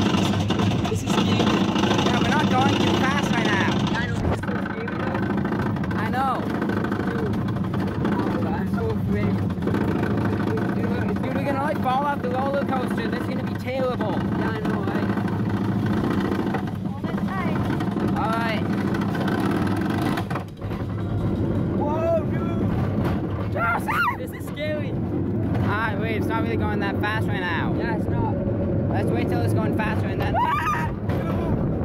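Roller coaster train running on its track with a steady low rumble, riders' voices over it, and a run of rising-and-falling cries near the end.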